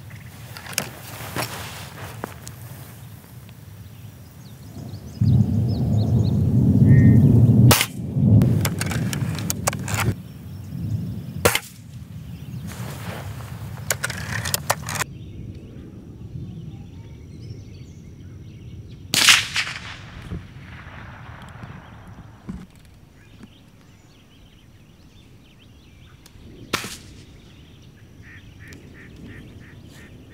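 Test shots from a Gamo Silent Cat .177 spring-piston air rifle heard up close: several sharp snaps and clicks, with a loud low rumble for a few seconds. Heard from 20 yards away, one loud, echoing crack from an unsuppressed .22 rifle, then later a much quieter air-rifle shot.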